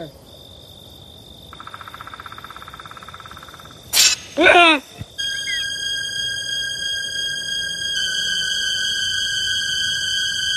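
Crickets trilling, then a sudden loud crack about four seconds in followed by a short shriek that falls in pitch. Eerie horror-film synth music then sets in with sustained high tones that thicken about eight seconds in.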